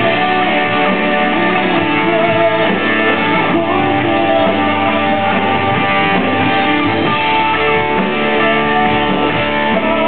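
Live music: a man singing into a microphone with sustained, wavering notes over guitar accompaniment.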